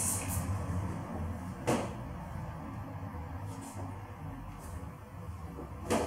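A short hiss of hair product being sprayed onto the hair, ending just after the start, then a single sharp knock about two seconds in, followed by a few faint soft brushing sounds over a low room hum.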